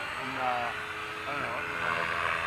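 Electric Align T-Rex 550 RC helicopter in flight: a steady whine from its motor and rotor over an even rushing hiss. Its head speed sounds rather low.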